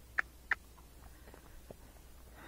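Hoofbeats of a Tennessee Walking Horse walking on a paved road: a few sharp clicks, two louder ones close together early on, then fainter ones.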